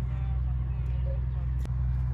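A steady low hum with faint voices over it, and a single sharp click near the end.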